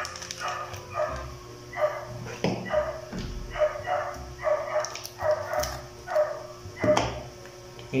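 A dog barking over and over, about two barks a second, with a few sharp clicks from plastic packaging being handled.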